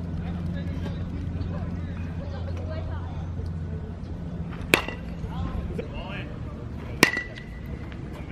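Two hits of a metal baseball bat on a ball, a little over two seconds apart, each a sharp crack with a ringing ping; the second rings longer.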